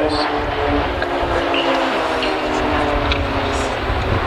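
Pilatus PC-9 turboprop trainers flying overhead in formation: a steady engine and propeller drone that slowly falls in pitch as the aircraft pass, over a low rumble.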